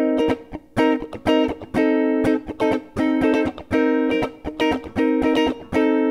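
Semi-hollow electric guitar played in a funk comping rhythm: short, choppy chord stabs moving between C minor 7 and C minor 6, with muted string scratches in between, about a chord every second.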